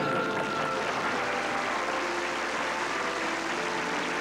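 Studio audience applauding, with a melody of held notes playing along underneath.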